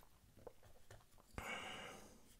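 Faint, light clicks of small metal knife parts being handled, a few ticks about half a second apart, then a soft click and a brief rustle in the second half. Otherwise near silence.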